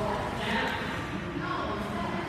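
Water splashing and churning from a swimmer kicking while on his back, with indistinct voices in the background.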